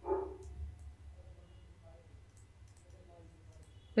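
A brief voice-like sound right at the start, then a low steady hum with a few faint clicks from a stylus writing on a tablet.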